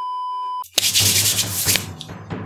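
A steady high test-tone beep of the kind played with television colour bars, lasting about two-thirds of a second. It stops, and loud hissing TV static follows.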